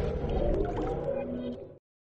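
Electronic intro music of a TV channel ident fading out, its held synth tones dying away into silence just before the end.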